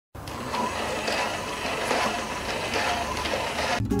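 Clementoni WalkingBot toy robots running: a small dual-shaft electric motor drives plastic gears that work the legs, making a steady mechanical clatter. Music cuts in just before the end.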